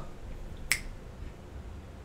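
A single sharp finger snap, less than a second in, against faint room tone.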